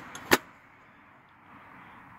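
Lid of a socket-set case being shut: one sharp click about a third of a second in.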